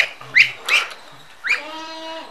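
Young Muscovy ducks peeping: short, sharp rising calls about every half second, then a longer steady-pitched call about one and a half seconds in.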